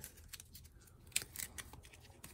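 Game cards being picked up from the table and gathered into a fanned hand: a scatter of faint short clicks and slides, the sharpest a little after a second in.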